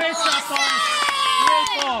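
Several young voices shouting and cheering over each other, with long drawn-out calls falling in pitch and a few sharp clicks among them.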